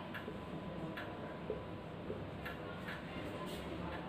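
Marker pen writing on a whiteboard: faint, irregular light ticks and scratches as the tip strikes and moves across the board.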